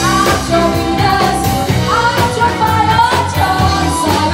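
A singer performing a pop song over a backing track with a steady beat.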